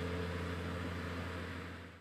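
Guitar's final chord ringing out and fading away, the low note lingering longest.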